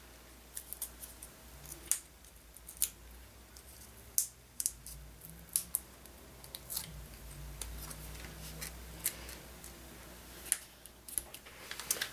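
Small paper and adhesive handling sounds: scattered soft clicks and ticks as foam pop dots are peeled from their backing and a paper heart is pressed onto card stock.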